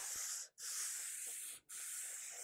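A hand rubs metal polish along the steel blade of a piso podang sword in long back-and-forth strokes, working rust and dirt off it. Each stroke is a hissing rub about a second long, with a brief break between strokes.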